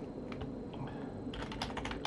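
Typing on a computer keyboard: a few scattered keystrokes, then a quick run of key clicks starting about a second and a half in.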